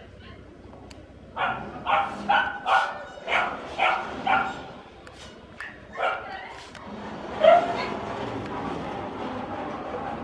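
A dog barking: a quick run of about seven short barks roughly two a second, then a single bark, then one louder bark.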